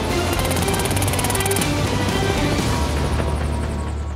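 Music over a burst of fully automatic fire from an AR-15 rifle: a rapid, even rattle of shots lasting over a second, starting shortly after the beginning.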